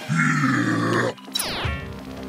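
A cartoon character's low, strained grunt of effort held for about a second, followed by a short sound effect that sweeps down in pitch, over background music.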